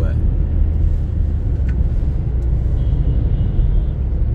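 Car interior noise on a highway: the engine and tyres make a steady low rumble heard from inside the cabin at cruising speed.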